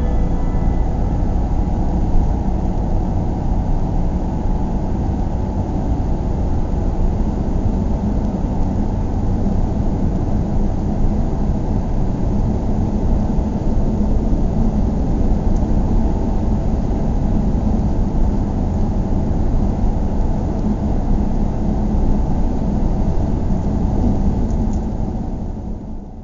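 Car driving: a steady low rumble of road and engine noise with no sudden events.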